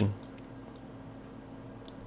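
A few faint computer mouse clicks, a pair just under a second in and another near the end, over a low steady hum.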